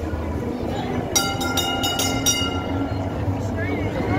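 Heritage tram's bell struck about five times in quick succession a little over a second in, each ring hanging on, as a warning to pedestrians by the track. Under it runs the low rumble of the tram rolling past on its rails, with crowd voices.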